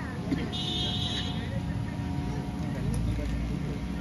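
Steady low hum with faint, indistinct speech, and a brief high-pitched trill about half a second in.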